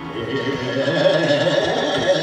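Male vocalist singing a wavering, ornamented melodic line in Hindustani classical style, growing louder over the first second, over the steady drone of a harmonium.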